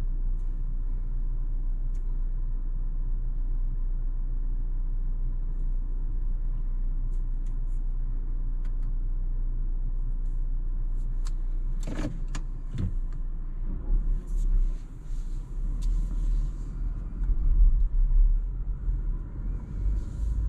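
Cabin sound of a Renault Arkana's 1.3-litre turbocharged four-cylinder petrol engine running at a standstill, a steady low hum. From about two-thirds of the way in, the car moves off and the low rumble rises and falls.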